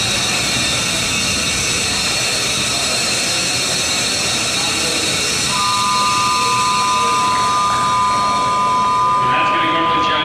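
Steady hall noise with voices and a continuous high whine. About halfway through, a steady two-note tone comes in and holds to the end.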